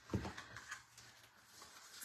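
Faint handling of a ribbon spool on a craft mat: two soft knocks in the first second.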